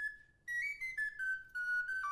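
A French flageolet playing a simple tune as a single line of high notes, one after another. The notes start about half a second in, after a brief gap.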